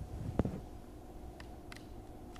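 Handling noise on a desk as a small USB gateway board and its cable are connected: one sharp knock about half a second in, then a few faint clicks, over a faint steady hum.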